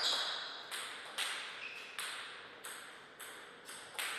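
Table tennis ball clicking as the rally ends: one sharp hit at the start, then a series of about seven lighter taps, each fainter than the last, as the ball bounces away.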